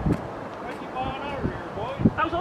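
People talking, with a few short low thumps.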